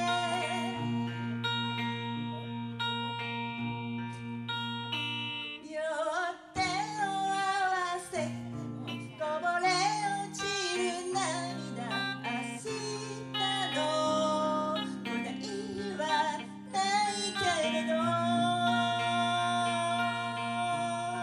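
A woman singing a slow ballad with guitar accompaniment, holding long notes near the start and again near the end, with a busier sung line in between.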